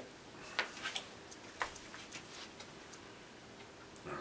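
A few faint, light ticks and clicks at irregular intervals over low room hiss.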